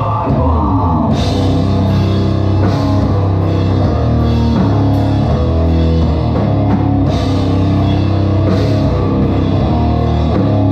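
High-speed punk band playing live and loud: distorted electric guitars and a drum kit, with cymbal hits every second or two.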